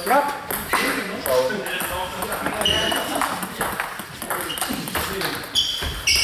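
Table tennis balls clicking off bats and tables from the surrounding matches, with several short high pings, over voices echoing in the hall.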